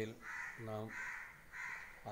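A crow cawing three times in quick succession, harsh calls about half a second apart.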